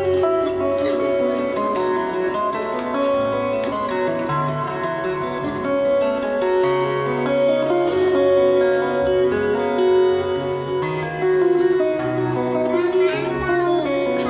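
Solo steel-string acoustic guitar played fingerstyle: a plucked melody over a moving bass line.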